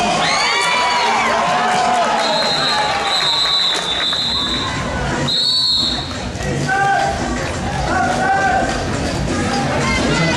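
Crowd shouting and cheering in a gymnasium during a roller derby bout, over the clatter of skaters. A referee's whistle gives one long blast about two seconds in, then a short, sharp one about five and a half seconds in.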